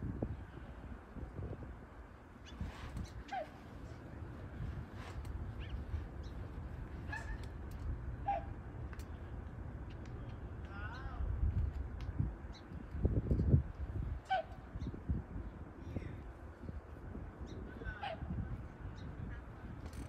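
A bird giving short single calls every few seconds, over low wind rumble on the microphone that gusts louder near the middle, with faint light clicks.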